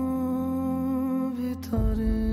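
Dramatic background score: one long held note over a low drone. About 1.7 seconds in there is a short click, and the music moves to a slightly lower held note with deep bass coming in.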